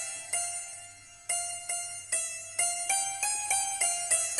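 Electronic keyboard playing a melody with its santoor voice, one finger striking single notes that each ring and fade. Early on one note is left to die away for about a second; then the notes follow quickly, about three a second.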